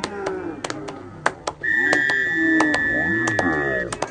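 Referee's whistle blown in one long steady blast of about two seconds, starting near the middle. Under it are the voices of players and spectators, a laugh at the start, and scattered sharp clacks.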